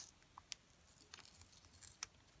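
Faint handling of a paper sticker on a planner page: a light tick about half a second in and soft paper rustles near the end as fingers press and shift the sticker.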